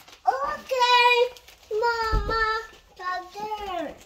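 A young child singing in three long, high held notes, the last one sliding down in pitch.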